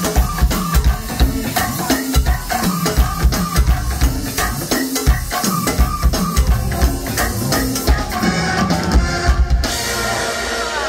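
A live band playing: drum kit with a steady kick-and-snare beat under a walking bass guitar and electric guitar. The beat stops near the end.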